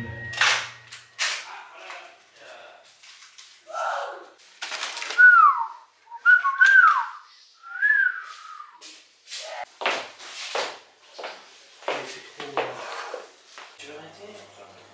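Kitchen handling noises: irregular rustling and light clatter as cheeses are unwrapped and cut on plates. In the middle come a few short whistle-like sliding pitches.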